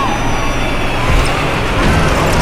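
Sound effect of a bus driving along a road: a steady engine and road rumble, swelling about a second in and again near the end.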